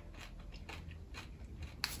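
A person chewing a crunchy sugar-shelled chocolate sweet (a Galaxy Minstrel) with mouth closed: a series of faint, short crunches as the candy shell breaks.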